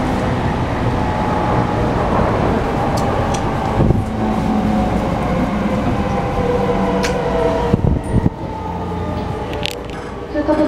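Running noise inside an E231 series commuter train car as it brakes into a station, with the VVVF traction motor whine falling steadily in pitch. The whine and rumble die down about eight seconds in as the train comes to a stop, with a few short clicks.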